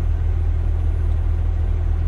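Kenworth semi truck's diesel engine heard from inside the cab, running with a steady low rumble while parked during a parked regeneration, the idle raised to burn soot out of a full DPF filter.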